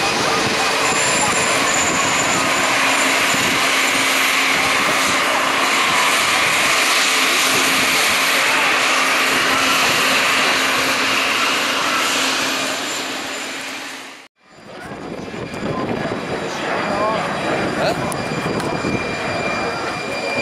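Jet engines of a SWISS Bombardier CS100 (A220-100) taxiing close by, its Pratt & Whitney geared turbofans giving a steady loud rush with a faint whine. The sound cuts off abruptly about 14 seconds in, followed by quieter jet noise and faint voices.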